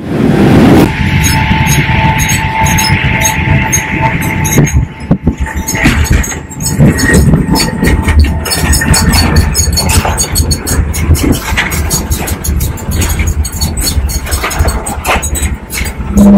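Jet airliner cabin noise, a loud steady low rumble. A faint steady tone runs through the first few seconds, and a string of clicks and knocks runs through the second half.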